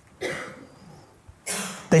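A single short cough about a quarter of a second in, fading quickly, then a breathy hiss just before speech resumes.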